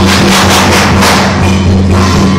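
Loud lion-dance percussion band playing: a drum beating with cymbals clashing several times a second.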